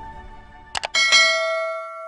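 End-screen sound effects: a quick double mouse click, then a bright bell chime struck twice that rings on and slowly fades, the notification-bell effect of a subscribe animation.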